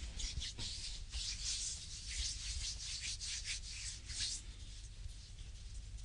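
Hands rubbing and kneading the sole of a bare foot, skin sliding on skin in a quick run of short strokes that turn softer near the end.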